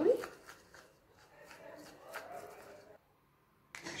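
Plastic spoon stirring a thick paste of cinnamon, cocoa and milk in a small ceramic bowl: faint, irregular scraping and clicking against the bowl, stopping abruptly about three seconds in.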